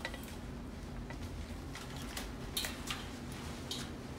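A few light clicks and rustles from hands tucking flower stems and greenery into a floral arrangement's container, over a steady low hum.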